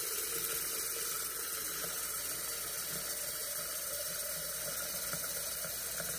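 Kitchen tap running steadily, its stream pouring into the upper reservoir of a plastic water filter pitcher and filling it.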